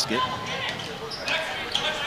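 A basketball being dribbled on a hardwood gym floor, a few separate bounces, over the background chatter of a large crowd.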